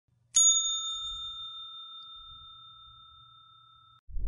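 A single bright bell-like chime struck about a third of a second in. It rings on with a few clear tones and fades away over about three seconds.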